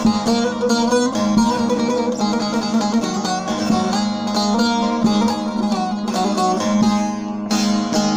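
Bağlama (Turkish long-necked saz) played solo as an instrumental passage between sung verses: quick plucked notes over a steady ringing drone string.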